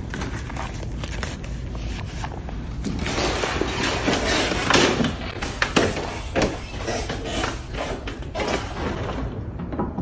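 Iron hand printing press being worked: a run of clunks, knocks and sliding sounds as the paper-covered form is brought under the platen and the bar is pulled to make an impression. The knocks come thickest and loudest in the middle.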